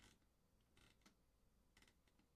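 Near silence: room tone with three faint, short clicks, about a second apart.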